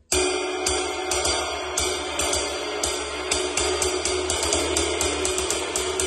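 A Vulcan cymbal with a gel damper stuck on it, played with a drumstick in a quick run of strokes, a few a second, over a continuous shimmer. The damper takes off just the necessary amount of ring, so the cymbal still sounds full.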